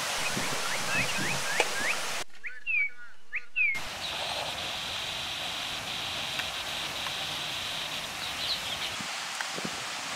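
Birds calling outdoors: a run of short rising chirps, then a few louder calls a couple of seconds in, over a background hiss. From about four seconds in, a steady high-pitched buzz runs under the calls for several seconds.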